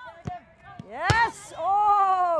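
A football kicked once with a sharp thud about a second in. Straight after it a voice calls out, rising and then held.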